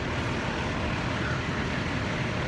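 Steady running noise of fire engines at work, their diesel engines and pumps supplying an aerial ladder's water stream.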